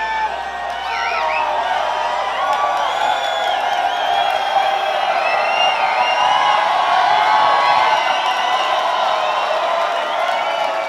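Large concert crowd cheering and whooping, many voices overlapping in a hall.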